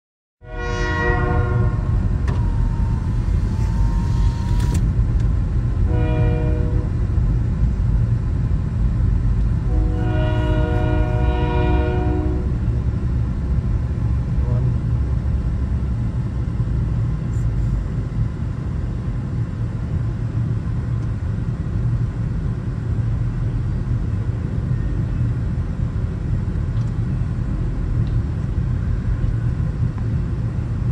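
Freight train horn blowing three blasts, a long one, a short one, then another long one about ten seconds in, over the steady rumble of the freight train rolling through a grade crossing. The rumble carries on after the horn stops.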